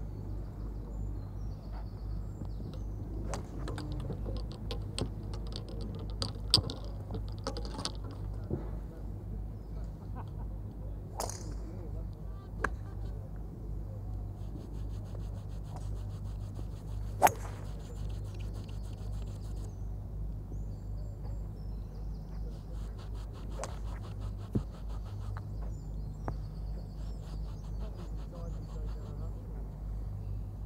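Golf club striking balls on a practice range: a handful of sharp, separate cracks, the loudest about 17 seconds in, over a steady low background hum.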